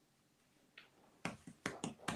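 A pause of near silence, then a few short clicks and smacks in the last second: mouth sounds as the speaker draws breath to go on.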